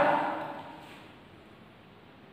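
The end of a man's voice dying away in room echo, then faint, steady room hiss.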